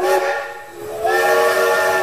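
Steam locomotive whistle blowing twice, a short blast and then a longer one, over a hiss of steam.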